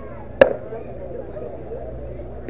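A baseball popping into the catcher's mitt once, a single sharp smack, over faint background chatter.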